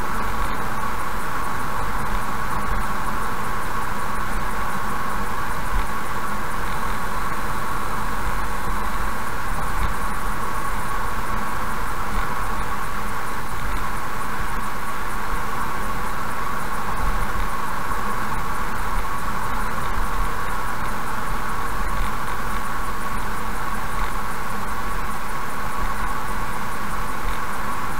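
Steady road noise of a car cruising at about 60–65 km/h on an asphalt highway: tyre and engine noise heard from inside the cabin through a dashcam microphone, even and unchanging, with a constant hum.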